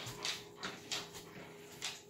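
A dog close by making quick, noisy breaths, about three a second.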